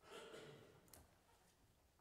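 Near silence with a faint breath from a person at the start, then a small click just before a second in.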